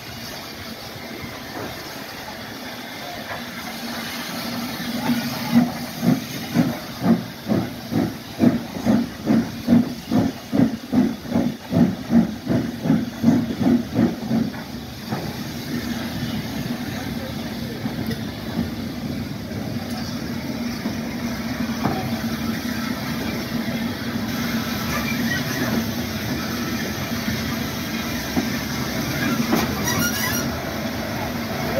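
Steam locomotive working a train away, its exhaust chuffing in loud regular beats about two a second from about five seconds in. The beats fade after about fifteen seconds into a steady hiss and rumble of the moving train.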